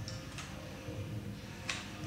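A few short, light ticks at uneven intervals over a low steady hum.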